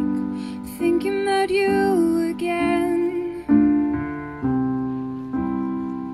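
A woman singing a slow, gentle song over piano chords struck about once a second. The voice drops out a little past halfway, and the piano carries on alone.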